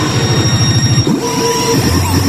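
Pachinko machine sounds during a presentation: a loud, dense mix of electronic effects, with a rapid pulsing rumble under gliding tones and a steady high whine.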